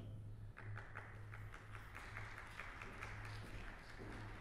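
Faint audience applause welcoming the orchestra, many hands clapping, thinning out near the end, over a steady low hum.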